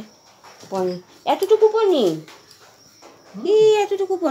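A dog whining in three cries: a short one, then a long cry that slides down in pitch, then a held cry near the end.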